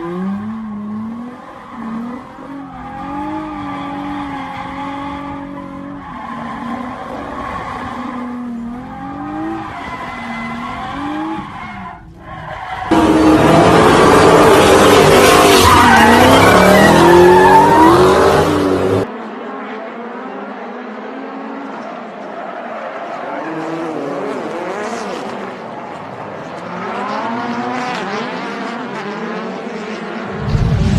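A car engine revving up and down with tyres squealing through a drift. About 13 seconds in comes a much louder burnout: the tyres screech for about six seconds, and the sound cuts off suddenly.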